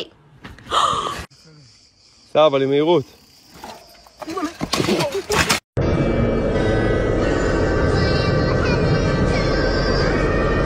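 A few short sounds: a noisy burst, then a wavering cry with a gasp about two and a half seconds in, then hissy bursts. An abrupt cut about six seconds in gives way to steady background music.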